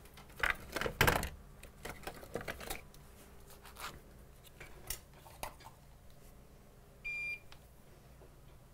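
Small tools and parts clicking and clattering on a repair bench as they are moved about in a search for solder wick, loudest in the first second and a half. About seven seconds in there is one short, steady electronic beep.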